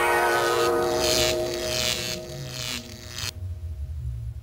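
Logo sting for an animated production-company ident: a held musical chord with three or four whooshing sweeps. It cuts off about three seconds in, leaving a low rumble that fades out.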